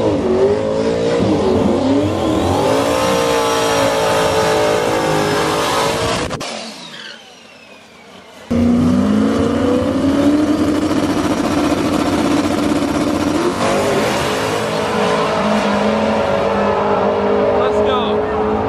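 Drag-racing car engine revving at the starting line, its pitch sweeping up and down; the sound drops away briefly about six and a half seconds in, then an engine runs on steadily and loudly again.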